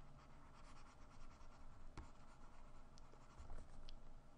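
Faint scratching of a pen stylus scribbling back and forth on a drawing tablet, with a light click about halfway through.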